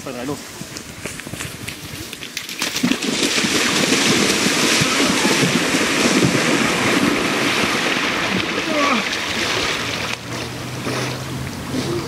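Two people running and wading into a lake, their legs churning up loud splashing spray. The splashing starts about three seconds in and eases off near the end.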